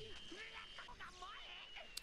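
Faint, low-level sound from the anime episode playing under the reaction: quiet voice-like sounds and a thin, steady high tone.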